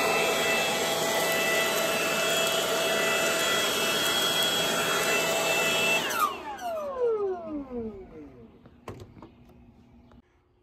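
Milwaukee M18 FUEL cordless brushless leaf blower running on its low speed setting: a steady rush of air with a whine over it. About six seconds in it is switched off and the fan winds down, its whine falling away over about two seconds.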